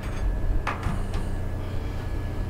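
Steady low electrical hum, with a couple of faint light clicks about two-thirds of a second and a second in as small metal parts are handled inside the computer case.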